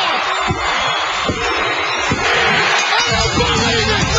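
Arena crowd noise with three sharp slaps on the ring mat, under a second apart: the referee's three-count for a pinfall. About three seconds in, loud rock theme music starts, as it does when a match ends.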